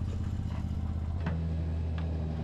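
A motor running steadily, a low hum whose pitch steps down slightly about a second in.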